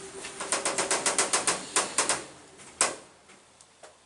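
A quick run of sharp mechanical clicks, about eight a second for around a second, then a few scattered clicks, one loud one near three seconds in, before it goes quiet.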